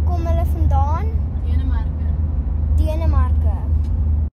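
A child's voice talking in short phrases over the steady low rumble of a car's cabin on the move.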